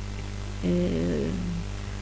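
A person's drawn-out voiced hesitation sound, a wavering hum lasting about a second, over a steady low electrical hum.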